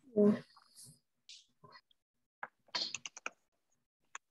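Computer keyboard keys being typed, a quick run of sharp clicks about two and a half seconds in as a short text label is entered.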